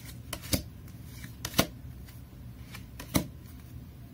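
Tarot cards being shuffled and handled by hand: a few short, sharp card snaps, the loudest about a second and a half in and again about three seconds in.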